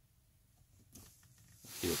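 Mostly quiet, with a faint click just before a second in, then a rising hiss that leads into a man starting to speak near the end.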